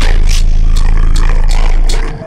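Slowed, bass-boosted trap song: a long, loud, distorted 808 bass note held under hi-hat and snare hits, dropping out at the very end.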